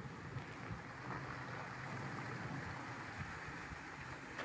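Lexus GX470's V8 engine running at low revs as the SUV crawls over a rutted dirt trail, a steady low rumble under an even rushing noise.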